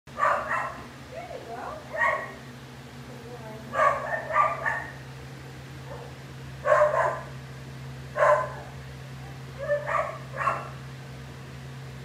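Short animal calls, coming singly or in quick runs of two or three every second or two, over a steady low hum from the underwater treadmill's motor.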